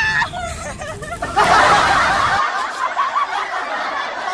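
Young women laughing and giggling, with some talk mixed in.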